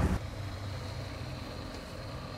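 A fishing boat's motor running steadily at slow speed: a low rumble under a noisy wash of wind and water.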